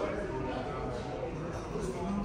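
Indistinct voices of people talking, not clear enough to make out words.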